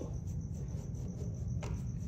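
A steady high-pitched insect trill over a low, even background rumble.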